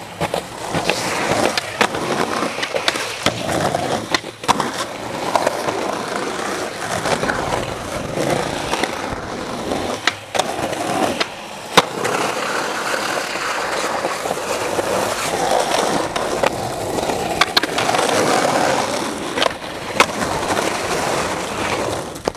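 Skateboard wheels rolling on rough pavement, with a sharp clack of the board hitting the ground every few seconds, about eight or nine in all.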